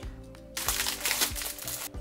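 Clear plastic parts bag crinkling, starting about half a second in and stopping just before the end, over steady background music.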